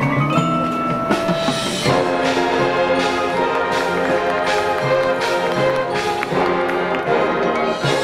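High school marching band playing its field show. About two seconds in the sound swells as the full band comes in with sustained brass chords, with percussion strikes cutting through.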